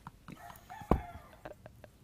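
A rooster crowing faintly, with a single sharp knock a little under a second in.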